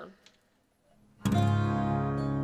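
Acoustic guitars strum an opening chord together a little over a second in, after a near-quiet pause, and let it ring on.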